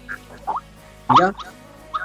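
Speech only: halting words in Russian with pauses and a brief 'mm-hmm' from a listener, over a Skype voice call.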